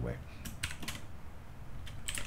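Computer keyboard being typed on: a short run of four or so quick keystrokes about half a second in, then a pause.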